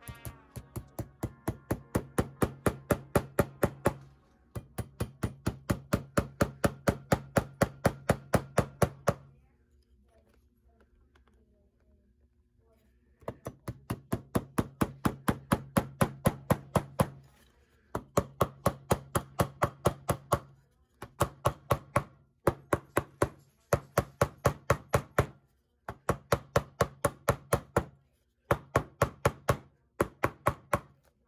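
Hammer driving small nails through a heel tap into a leather shoe heel held on a shoe tree: quick light blows at about five a second, in runs of a few seconds with short gaps and a pause of about four seconds after the first nine seconds.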